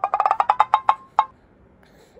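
Edited-in sound effect for a subscribe-button animation: a quick run of about a dozen short, pitched, wood-block-like ticks over a little more than a second.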